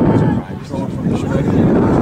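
Wind buffeting the microphone in a low, uneven rumble, with indistinct chatter of voices in the background.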